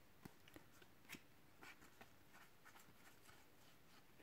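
Faint, scattered ticks and light rustles of Panini Adrenalyn XL trading cards being flipped through by hand, the clearest tick about a second in.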